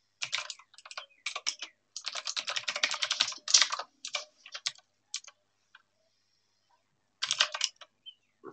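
Typing on a computer keyboard in quick runs of keystrokes, the longest and densest in the middle. A pause of about a second and a half comes before a short last run near the end.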